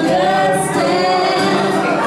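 Live solo performance: a woman singing, holding and bending long notes, while strumming an acoustic guitar.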